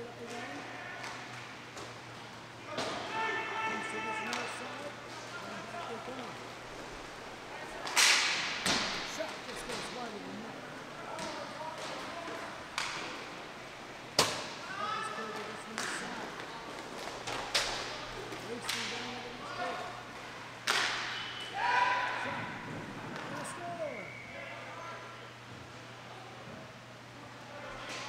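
Inline hockey play in a rink: several sharp cracks of sticks hitting the puck and the puck striking the boards, with players shouting between them.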